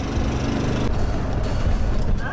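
Background music over the low rumble of a moving open-sided resort shuttle cart.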